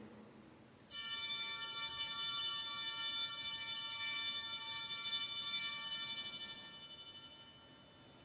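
Altar bells ringing at the elevation of the consecrated host. A bright, high ringing of several tones starts suddenly about a second in, holds for about five seconds, then fades away.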